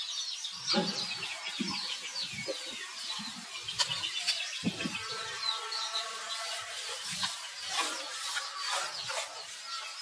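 Outdoor animal sounds: many short, high chirps throughout, typical of birds calling, with scattered low bumps. A longer, steadier call sounds from about halfway through for a couple of seconds.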